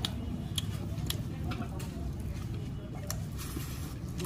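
Low background murmur of voices with a few light clicks and taps from eating by hand off a steel thali plate.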